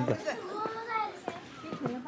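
Background voices of children at play, with several high-pitched calls rising and falling.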